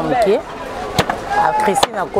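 A woman talking in short phrases, broken by two sharp clicks: one about a second in and one near the end.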